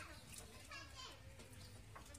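Faint background voices, children among them, over a low steady hum; otherwise near silence.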